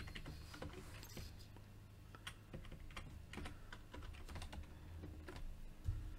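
Typing on a computer keyboard: faint, irregular keystrokes.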